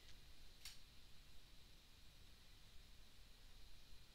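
Near silence: faint room hiss, with a single faint computer-mouse click less than a second in.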